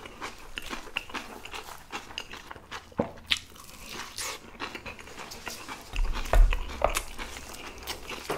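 Close-miked eating sounds: chewing a mouthful and biting into a whole block of Spam, with many short wet mouth clicks and smacks. A low thump about six seconds in is the loudest sound.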